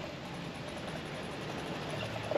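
Steady street ambience: an even hiss of background traffic, with no single sound standing out.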